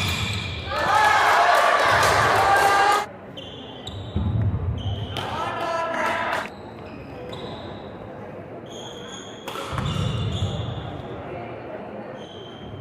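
Badminton rally on a wooden indoor court in a large echoing hall: sharp racket hits on the shuttlecock, short high squeaks of shoes on the floor, and footfalls. A loud call from a voice comes about a second in.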